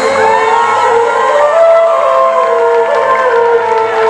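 A live band playing on stage, with keyboard and bass guitar, while a crowd cheers and whoops over the music.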